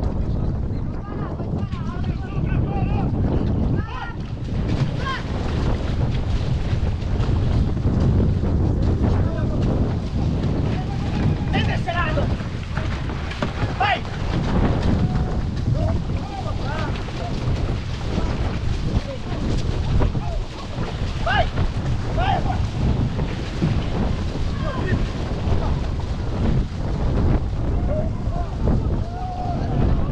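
Wind rumbling on the microphone over splashing water from outrigger canoe paddle strokes, with scattered short shouts from the crew.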